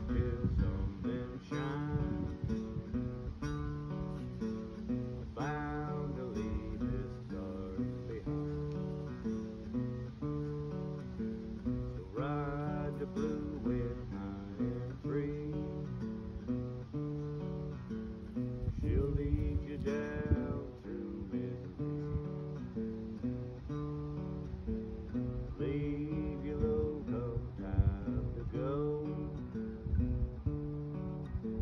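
Acoustic guitar played through a blues tune, with a steady alternating bass line under the melody notes and an outdoor echo.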